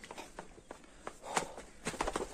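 Footsteps of a person walking, about two steps a second, with one sharper step about one and a half seconds in.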